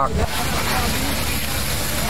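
Steady rushing hiss from a fire being fought: water spraying from a fire hose and flames burning through collapsed wooden shacks.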